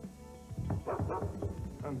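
A dog barking a few short times over music, about halfway through.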